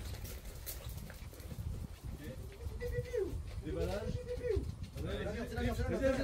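Indistinct people's voices talking off-mic, starting about two seconds in and growing busier near the end, over a low wind rumble and a few light taps.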